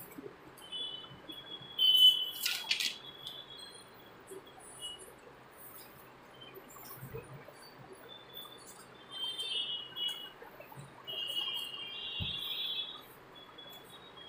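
Small birds chirping in short bursts of high-pitched calls, with a sharp clatter about two seconds in and a couple of dull knocks.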